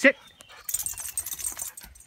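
A shepherd-husky mix dog moving about on dirt and leaf litter: a rustling noise with a light jingle lasting about a second, after one short spoken command.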